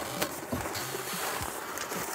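Paper entry slips rustling and shuffling as a hand stirs through them inside a clear plastic drawing drum, with a few light knocks against the drum.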